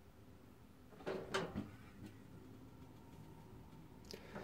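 Faint clicks from a Truma gas heater while its control knob is held down and its electric piezo igniter is worked to light the burner: three soft clicks in quick succession about a second in.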